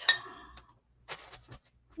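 A sharp knock followed, about a second later, by a few light clicks and taps: art supplies handled on a table as a paintbrush is picked up.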